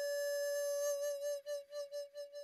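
Flute music: one long held note that starts to waver in pulses a little past halfway and fades out.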